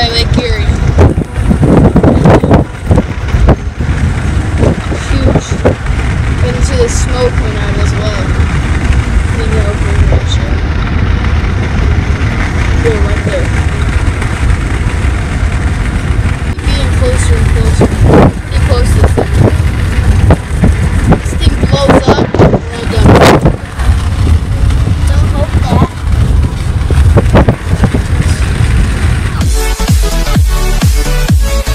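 Steady road and engine rumble inside a moving car's cabin, with indistinct voices now and then and a few louder knocks.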